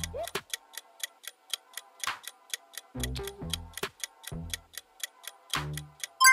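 A countdown-timer sound effect ticking quickly and evenly, about five ticks a second, over quiet background music, while the time to choose runs out.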